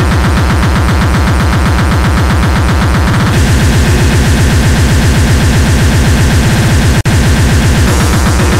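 Splittercore electronic music: a very fast, unbroken run of distorted kick drums under a dense wall of noise. The pattern shifts and gets louder about three seconds in, and the sound cuts out for an instant near the end.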